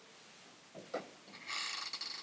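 Faint rapid metallic jingling, about ten clicks a second, from a dog's collar and leash hardware as a boxer moves, starting about one and a half seconds in after a short soft sound.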